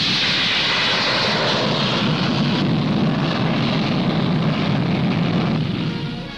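Jet engines of the six-jet Martin XB-48 bomber at takeoff power as it lifts off and flies past low: a steady, loud jet noise that barely changes, heard through an old newsreel soundtrack.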